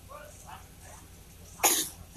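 Faint low voices, then near the end one short, loud cough into a microphone.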